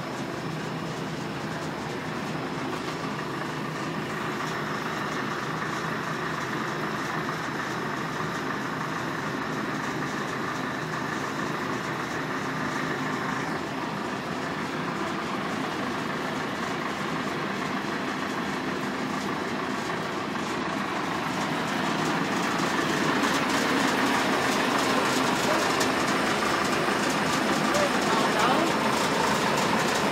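A machine running steadily with a constant hum, growing louder about two-thirds of the way through.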